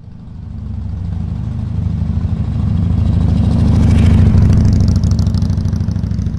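Motorcycle engine rumble used as a sound effect, swelling in loudness to a peak about four seconds in and then fading out near the end.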